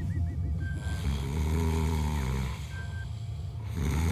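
Exaggerated comic snoring: a low rumbling snore that swells and fades twice, each breath followed by a short high whistle. It is the sound of a character fast asleep.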